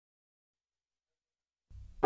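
Near silence, with a faint low sound rising near the end.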